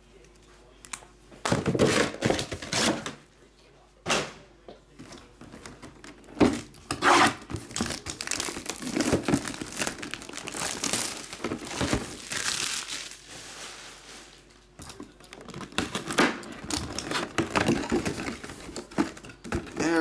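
Plastic shrink wrap being torn and crinkled off a cardboard box, in irregular rustling bursts with a few sharper rips.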